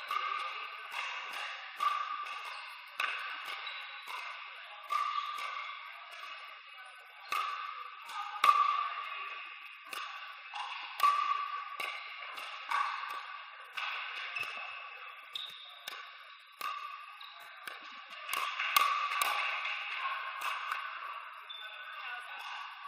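Pickleball rally: sharp pops of paddles striking a hollow plastic outdoor ball, roughly one a second, each hit ringing on in a reverberant hall.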